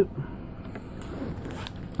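Faint rustling and crinkling as foil trading-card booster packs and a card are handled, with a few soft clicks.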